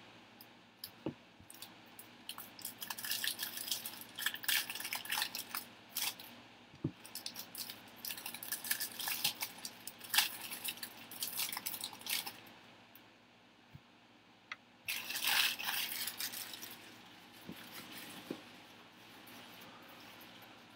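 Plastic trading-card pack wrappers crinkling and tearing as packs are opened and the cards handled, in irregular scratchy flurries with a louder burst about three-quarters of the way through.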